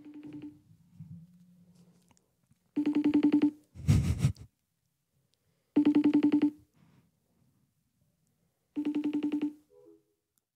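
FaceTime video call ringing out on an iPhone: three pulsing ring bursts, each lasting under a second and coming about three seconds apart.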